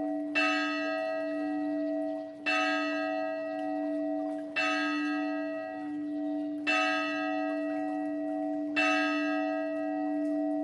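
A bell tolling a single note about every two seconds, five strokes, each ringing on into the next with a steady low hum between strokes.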